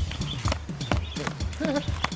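Background score of quick hand-drum percussion: an even run of knocks with short, pitch-bending drum tones.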